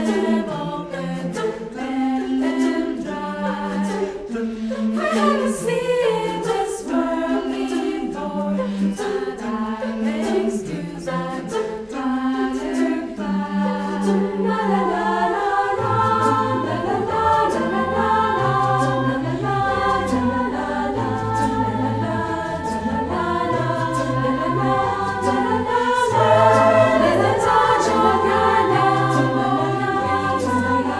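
Mixed a cappella choir singing in several parts, with no instruments. About halfway through the low voices drop into a lower register and the sound fills out.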